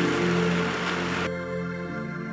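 A congregation praying aloud all at once, a dense wash of many voices, over sustained keyboard chords. A little over a second in, the crowd noise cuts off suddenly, leaving only the soft held chords.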